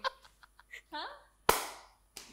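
A single sharp, loud smack of a hand about one and a half seconds in, trailing off briefly, amid laughter.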